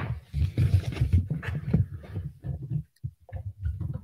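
Handling noise from a necklace being arranged on a display bust held close to the microphone: a sharp click, then irregular low bumps and rustling.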